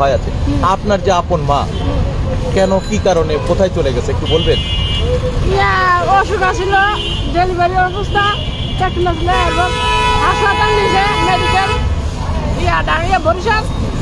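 People talking over a constant low rumble, with a steady, even tone held for about two seconds around ten seconds in.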